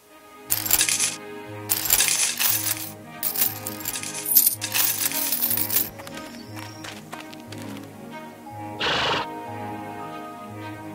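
Gold coins jingling and clinking in four bursts over about five seconds, as a pile of coins is taken off and set down. Background music with a steady pulsing beat plays underneath.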